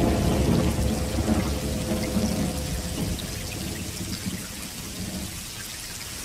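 Swamp ambience from a film soundtrack: a dense, rain-like wash of noise over a low rumble. It is loudest at first and slowly eases off.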